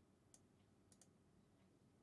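Near silence: room tone with a few very faint clicks, the first about a third of a second in and two close together about a second in.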